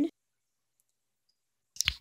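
Dead silence, then near the end a brief cluster of sharp clicks where the recording cuts to a new clip.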